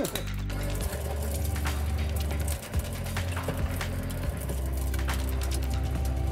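Shredder's cutter rollers chewing hard PLA 3D-printed plastic, a run of sharp irregular cracks and crunches as the prints are cut into shreds, over steady background music.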